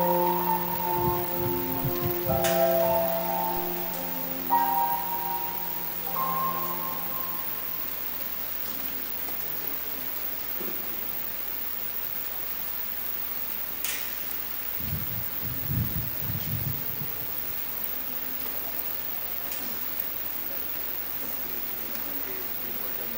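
The closing chords of a church hymn die away over the first several seconds, leaving a steady hiss of room tone with a few faint knocks about fifteen seconds in.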